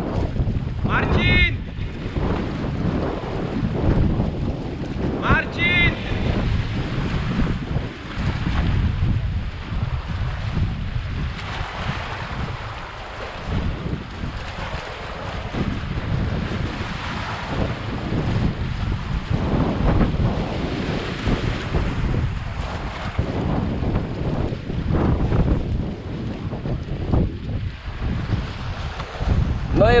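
Wind buffeting the microphone in uneven gusts over the steady wash of sea waves on a rocky reef edge.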